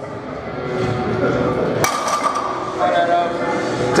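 A heavily loaded barbell's steel plates clink once with a sharp metallic knock, about halfway through, during a set of heavy hip thrusts.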